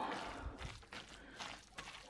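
Wire potato masher squashing roasted chicken bones and vegetables in a colander to press the stock through: faint, irregular squashing sounds that fade toward the end.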